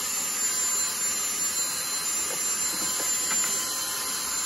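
Dyson cordless handheld vacuum running steadily, a constant rush of air with a thin motor whine, as its narrow nozzle sucks dust from a refrigerator's condenser coils.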